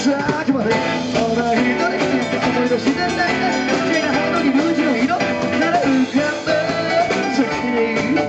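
Live rock band playing an upbeat song: drum kit keeping a steady beat under electric guitars, amplified through the stage PA.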